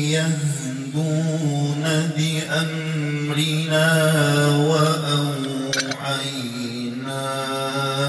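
A man reciting the Qur'an in a melodic, drawn-out tajwid style, holding a long ornamented note that wavers and bends in pitch throughout.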